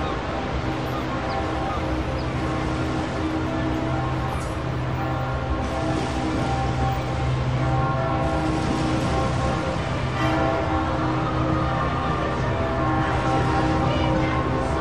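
Mixed ambient soundscape of steady city and harbor noise under long-held droning tones, growing slightly louder toward the end.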